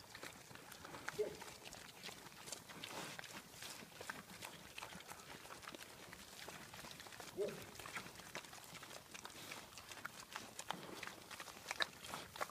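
Pigs eating feed scattered on the ground at close range: irregular crunching, wet smacking and snuffling as they root for the pieces, with a short grunt about a second in and again near the middle.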